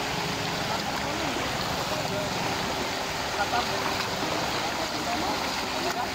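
Floodwater rushing steadily through a flooded street, a continuous even rush of flowing water.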